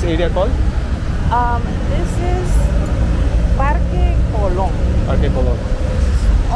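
Steady low rumble of street traffic, with short bits of people talking over it.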